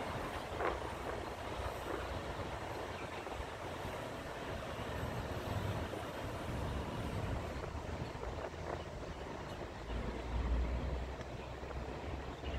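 Steady street traffic noise with a low vehicle engine rumble that swells about ten seconds in.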